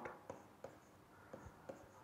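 Faint scratching and tapping of a stylus writing on a pen tablet, with a few light, irregular ticks as the strokes are made.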